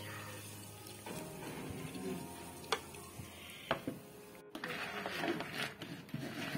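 Faint background music with a couple of light clicks, then, after a break about four and a half seconds in, a spoon scraping and stirring fried potato slices and onions in a bowl.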